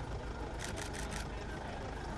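Car engine idling with a steady low rumble. About half a second in comes a rapid burst of about five camera shutter clicks.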